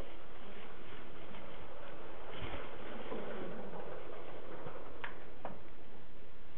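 Room noise in a lecture room, with a dull thump about halfway through and two short clicks near the end.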